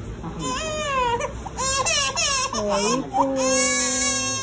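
A four-month-old baby crying: a few short wails that bend up and down in pitch, then one long, steady wail near the end.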